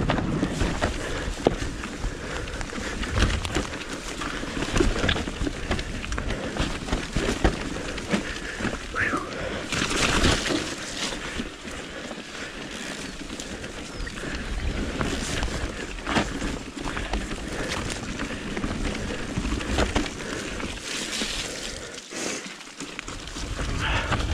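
Mountain bike being ridden downhill, tyres rattling over wooden boardwalk planks at first and then rolling over a dirt and root trail, with a steady rush of riding noise and frequent knocks and clatters from the bike over bumps.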